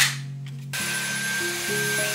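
A short click right at the start, then about three-quarters of a second in a Dyson cordless stick vacuum starts up and runs over carpet with a steady, loud rushing hiss and a high whine. Background music continues underneath.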